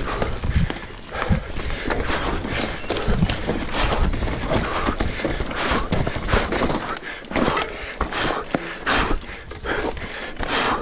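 A person breathing hard in repeated gasps, with footsteps and knocks on rocky ground and wind rumbling on the microphone.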